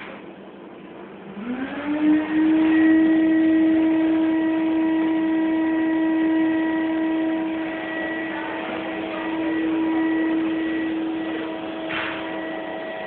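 Electric motor of a motorized kitchen-island lift running as it raises the stone-veneer countertop. The hum rises in pitch as it starts, about a second and a half in, then holds steady.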